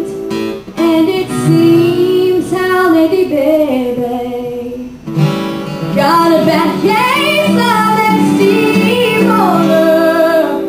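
A young female vocalist singing a song live into a microphone, backed by two acoustic guitars. The sung line pauses briefly about halfway through, then carries on.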